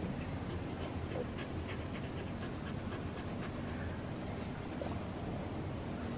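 A doodle dog panting steadily.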